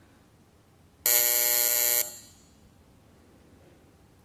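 Electronic buzzer sounding once for about a second, a steady buzzing tone, signalling the opening of a nominal vote.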